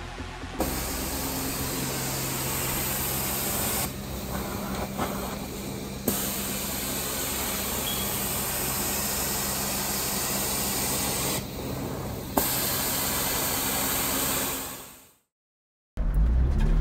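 Hot-water extraction carpet-cleaning wand drawn across carpet: a steady loud hiss of spray and vacuum suction over the low hum of the machine. It drops back briefly twice as the stroke changes, coming back each time with a click, and fades out near the end.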